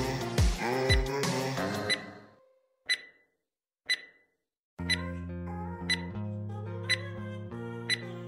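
Countdown-timer beeps, short and high, one a second from about three seconds in. Background music fades out about two seconds in, and a new music track starts near five seconds under the beeps.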